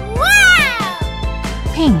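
A cartoon voice effect: one long pitched call that rises and then falls, followed near the end by a short falling squeak, over background music with a steady beat.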